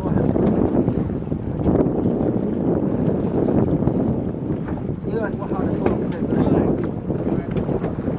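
Wind buffeting the microphone on open water over the steady running of a boat's engine, with voices calling out briefly a couple of times.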